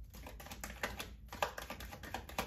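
A deck of tarot cards being shuffled in the hands: a quick, uneven run of faint card clicks and flicks.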